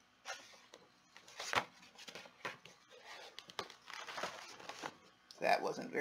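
Paper pages of a large hardcover picture book rustling and crinkling as a fold-out spread is opened out and handled, in a run of irregular swishes and crackles. A woman's voice starts near the end.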